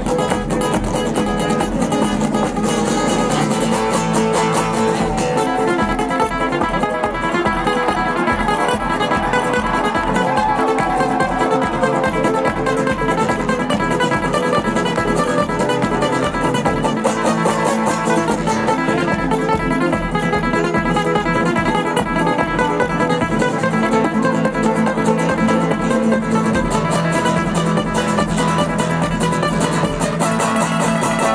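Amplified steel-string acoustic guitars played live: fast picked lead lines over driving rhythmic strumming, in a flamenco-tinged style.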